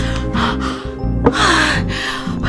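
A woman gasping for breath in distress over sustained background music, with a sharp gasp a little over a second in.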